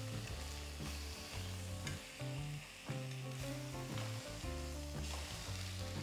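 Banana-leaf-wrapped sardine parcels sizzling and frying in oil in a pot, with the odd click of metal tongs as they are turned.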